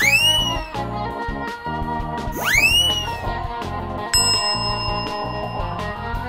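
Background music with comic sound effects. Two whistle-like glides sweep sharply up in pitch and curl back down, one at the start and one about two and a half seconds in. A bell-like ding rings out about four seconds in.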